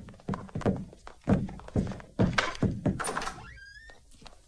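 Fight-scene sound effects: a rapid, irregular series of about a dozen heavy thuds and knocks. Near the end comes a short squeal that glides up and then holds.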